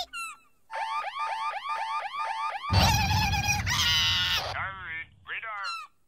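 Cartoon character voice and sound effects without words: a quick run of about eight repeated rising-and-falling chirps, then a louder, rougher vocal outburst, then sliding tones falling and then rising.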